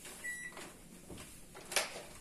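Cloth wiping the stainless-steel front of a built-in microwave. The cloth presses the touch keypad and the microwave gives one short high beep about a quarter second in. Faint rubbing strokes follow, then a short sharp swipe near the end, the loudest sound.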